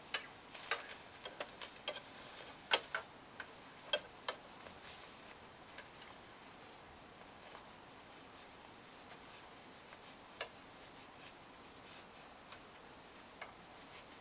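Irregular small clicks and taps with soft fabric handling as a sewn cotton face mask is turned right side out by hand, a corner pushed out with a pointed wooden stick. The clicks come thickest in the first few seconds, then thin out, with one sharper click about ten seconds in.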